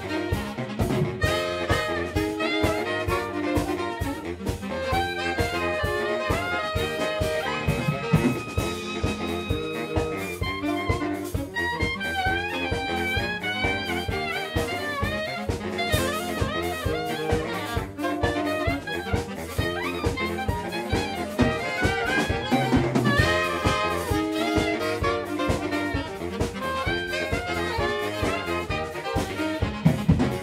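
A saxophone quartet of soprano, alto, tenor and baritone saxophones playing an upbeat jazz arrangement together over a steady drum-kit beat.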